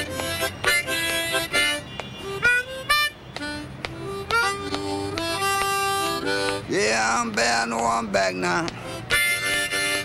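Harmonica played solo: short rhythmic chugging chords at first, then single notes with pitch bends and a few long held notes. Near the end come wavering, downward-bent notes, followed by chugged chords again.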